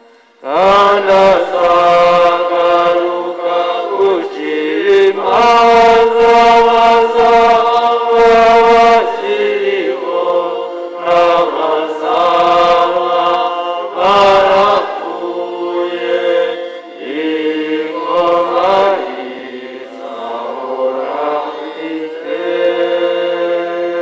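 A congregation singing a liturgical chant together during Mass, in phrases of long held notes with short breaks between them.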